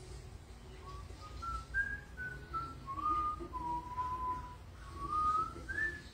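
A person whistling a slow tune: a string of held notes that step up and down, sinking to a long low note in the middle and climbing again near the end.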